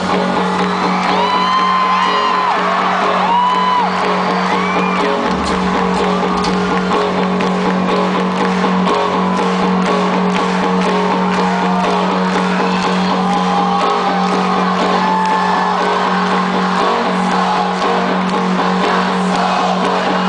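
Rock band playing live through an arena PA: an instrumental passage over a steady held low note, with scattered whoops and cheers from the crowd on top.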